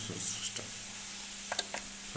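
A steady low electrical hum with a few faint clicks about one and a half seconds in.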